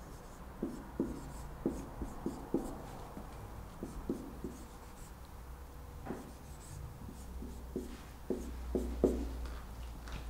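Marker pen writing on a whiteboard: a run of short, irregular strokes and taps, the loudest near the end.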